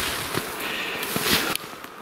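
A walker's heavy breathing, two hissing breaths, with a few soft footsteps in dry grass and thin snow between them.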